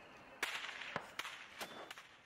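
Gunfire: about five sharp shots at irregular intervals, each trailing off in a short echo.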